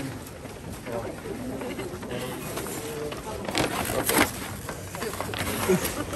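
Indistinct chatter of several people at work around a table, with paper bags and plastic-wrapped food being handled. A couple of sharp crinkles about three and a half to four seconds in are the loudest sounds, and another comes near the end.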